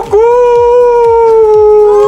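A loud, long wail held on one note, drifting slightly lower before breaking off near the end.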